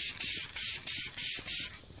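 Aerosol can of black DupliColor spray paint hissing in a run of short bursts, about three a second, as the nozzle is test-sprayed to check that it sprays; it stops near the end.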